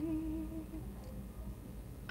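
A short closed-mouth laugh, hummed on a wavering pitch for under a second at the start.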